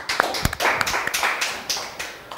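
Small audience applauding in a room, a dense patter of hand claps that fades near the end, with a low thump about half a second in.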